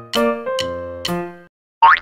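Children's background music, a few steady notes in turn, stops about one and a half seconds in. Just before the end a short sound effect sweeps up in pitch.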